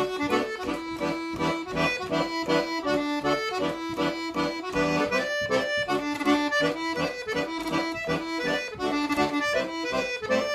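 Solo piano accordion playing a Scottish traditional dance tune, the opening strathspey of a set, with a steady rhythmic melody over chords.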